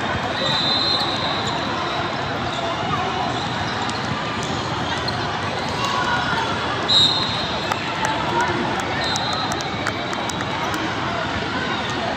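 Basketball game in a big hall: a ball bouncing on the hardwood court and players moving over a steady background of spectators' chatter, with a few short high-pitched sounds, the loudest about seven seconds in.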